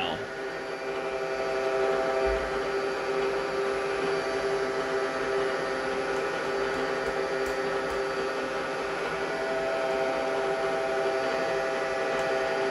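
Bridgeport J-head milling machine running, its spindle turning and the power quill down feed engaged at a slow feed rate. The sound is a steady mechanical whir with a few held tones.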